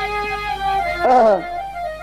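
Birha accompaniment: a harmonium holding sustained notes. About a second in, a short vocal wail slides steeply down in pitch.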